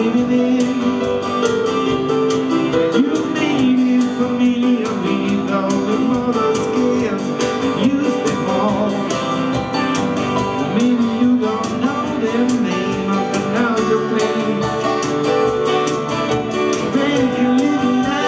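A man singing while strumming an Epiphone hollow-body guitar in a steady rhythm.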